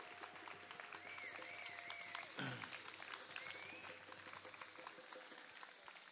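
Faint crowd applause of many scattered claps, thinning out toward the end. A few wavering high tones sound over it in the middle.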